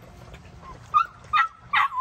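Pit bull-type puppy yipping: short, high-pitched yelps repeated about two or three times a second, starting about a second in.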